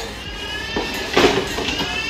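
Cardboard packaging rustling and scraping as a wire lantern is pulled out of its box, with a couple of sharper knocks of handling. A high, wavering tone comes twice.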